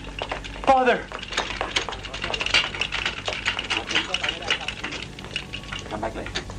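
Wheeled hospital stretcher clattering along with hurried footsteps, a dense run of rattles and clicks. A brief cry falls steeply in pitch about a second in.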